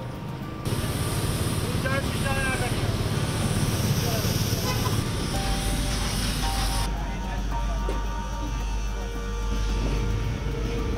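City street ambience: traffic and people's voices, with a steady hiss from about a second in until about seven seconds, when it cuts off, and a low engine hum joining about halfway through.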